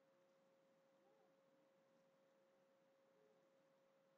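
Near silence, with only a very faint steady tone underneath.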